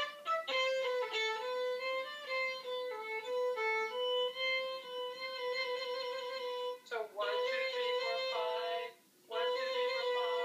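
Violin playing a short melodic exercise, with quick trills between neighbouring notes decorating the held tones. The phrase breaks off briefly twice in the second half.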